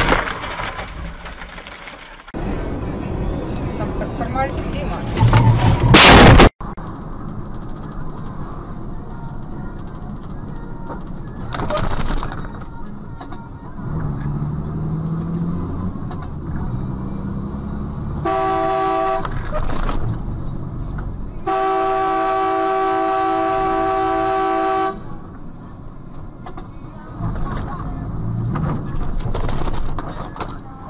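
Dashcam road and traffic noise, with a loud sudden noise about five seconds in that cuts off abruptly. Later a vehicle horn sounds twice: a short blast, then a long steady one of about three seconds.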